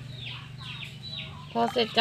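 Bird calls: a run of short, high chirps, each falling in pitch, over a low steady hum, until a woman's voice comes in near the end.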